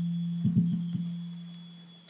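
Instrumental background music in a gap in the preaching: a low note held steadily and slowly fading away, with a brief few notes about half a second in.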